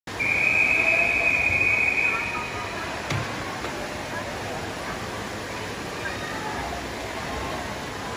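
A referee's whistle gives one long, steady high blast of about two seconds: the long whistle that calls swimmers up onto the starting blocks. After it come a single knock and the murmur of voices echoing in the indoor pool hall.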